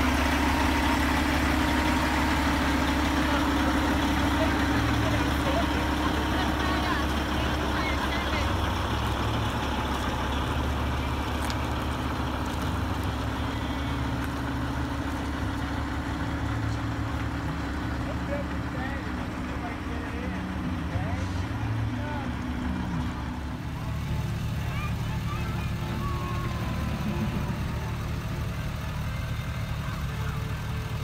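Parade vehicles driving slowly past: a semi-truck's diesel engine running with a steady low drone that fades after about eight seconds, followed by the engine and tyre noise of a flatbed float and a pickup truck rolling by.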